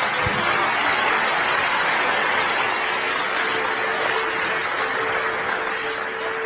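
Audience applauding steadily in a hall after a debater finishes speaking, with a faint steady hum underneath.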